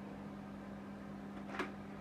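Quiet room tone: a steady low hum under a faint hiss, with one brief click about a second and a half in.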